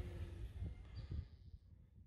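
Faint outdoor background noise with a low rumble, fading out to silence about one and a half seconds in.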